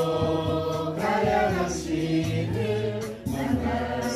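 Korean worship song: sung vocals, layered like a choir, over an instrumental backing track, the melody moving through long held notes.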